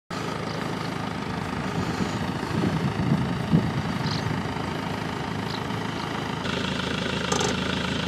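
Small van's engine idling steadily, a low continuous rumble.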